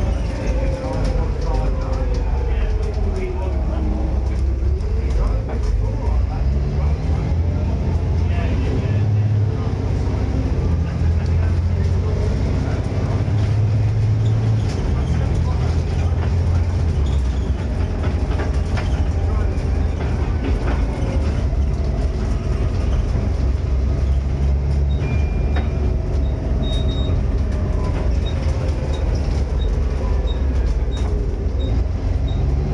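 Volvo B7TL double-decker bus under way, its diesel engine and driveline heard from inside the lower saloon: a deep steady drone with a whine that sinks and climbs again in the first few seconds and shifts in pitch with road speed later on. A faint regular ticking comes in near the end.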